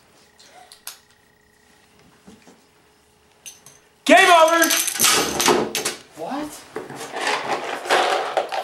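A few light clicks of plastic Upwords game tiles on the board, then about four seconds in a sudden loud yell followed by a noisy clatter mixed with voices.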